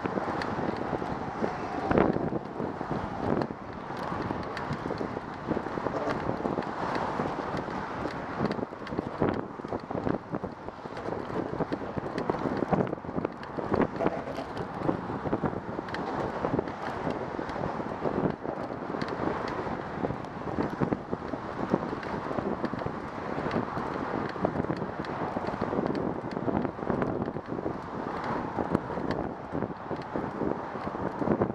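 Wind rushing over a bicycle-mounted camera's microphone while riding, over a steady wash of traffic from the bridge roadway alongside. Frequent small clicks and knocks come through the whole time.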